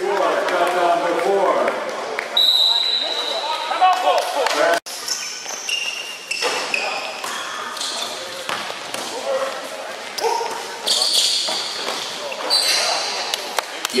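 Basketball game sounds in an echoing gym: a ball bouncing on the hardwood court, short high sneaker squeaks, and players calling out.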